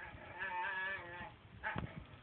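Dog making a drawn-out, pitched 'talking' moan lasting about a second, followed by a short second sound near the end.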